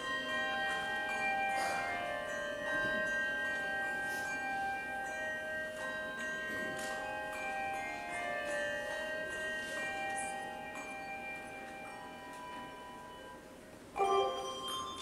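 Handbell choir ringing a slow passage of long, overlapping bell tones that ring on and die away, growing softer toward the end.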